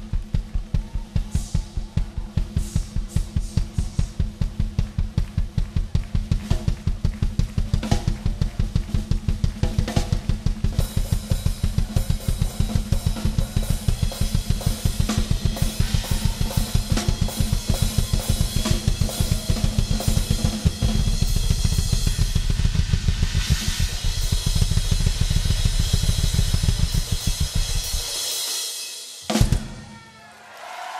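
Drum solo on a live drum kit: a fast, steady bass drum beat under snare and hi-hat, with cymbals building from about a third of the way in. Past two-thirds the bass drum runs into a continuous roll under crashing cymbals, stops, and a single final hit ends it.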